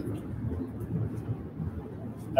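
Classroom room noise: a low, uneven rumble with no distinct events.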